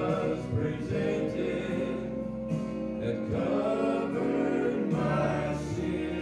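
Male gospel vocal group singing in harmony into microphones, holding long notes.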